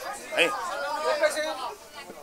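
Speech only: people talking, with voices overlapping in chatter.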